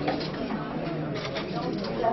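Crowd chatter at a buffet, with a few clinks of serving spoons and plates a little past halfway.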